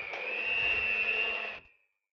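Electric hand mixer running with a steady whine, its beaters churning thick cookie dough with chocolate chunks, then switched off about a second and a half in, the motor winding down.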